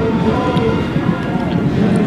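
A group of men's voices talking and calling out over one another, with no clear words.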